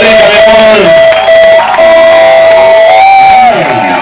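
A live rock band's amplified sound at the end of a song: one long high note held with short breaks, with the crowd cheering and shouting. Near the end the note slides down in pitch.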